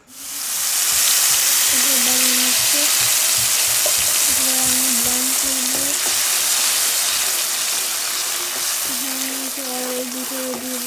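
A wet paste frying in hot oil in a pan: a loud, steady sizzle that starts suddenly at the beginning and eases off slightly, stirred with a spatula.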